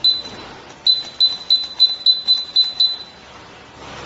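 High-pitched electronic beeps from a digital air suspension pressure gauge: one beep right at the start, then a quick run of eight short beeps about three a second. They confirm button presses as the gauge is stepped through its setting screens to change its display colour.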